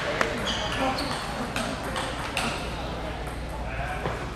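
A single table tennis ball strike just after the start ends a rally. After it come the voices of people talking in the hall.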